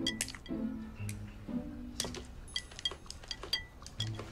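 Chopsticks and dishes clinking against porcelain plates and bowls during a meal, many light, irregular clicks with a brief ring, over soft background music.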